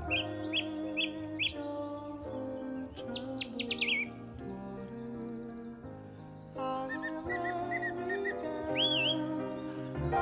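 Bird chirps over slow instrumental music with held chords: a few short chirps at the start, a quick run of falling notes about three seconds in, and a single rising whistle near the end.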